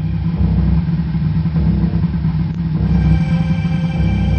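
Small boat's outboard motor running steadily, with background music.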